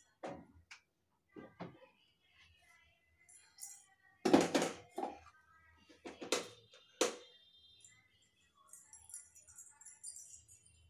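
Kitchen knife cutting through bread slices on a wooden chopping board, a few short knocks and scrapes, the loudest about four seconds in and two more a couple of seconds later, over faint background music.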